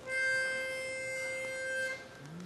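Pitch pipe blown on one steady note for about two seconds, giving the singers their starting pitch.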